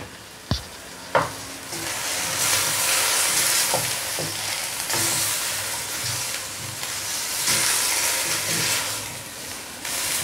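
Chicken, onion and aromatics frying in a stainless steel wok while a wooden spatula stirs and scrapes them. Two knocks come near the start, then the sizzling builds from about two seconds in and keeps on steadily.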